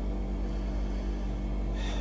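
Steady low machine hum with no distinct events.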